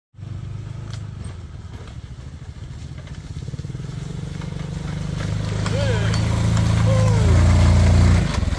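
Small step-through motorbike engines running at low revs on a dirt track, growing steadily louder as the bikes approach and loudest near the end.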